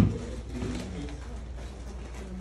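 A sharp thump, then a low, wavering cooing hum from a person's voice, lasting about a second and a half.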